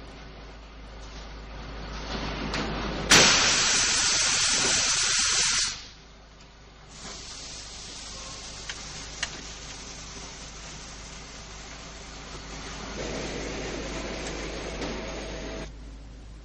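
Compressed air rushing out of an electric train's air brake system, as when the trip safety brake vents the brake pipe. One loud blast lasts about two and a half seconds a few seconds in, with a fainter steady hiss before and after.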